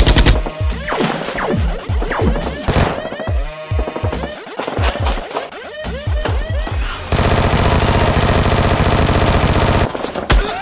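Dubbed-in gunfire sound effects over background music: a run of separate shots for the first seven seconds, then a continuous rapid burst of machine-gun fire to the end.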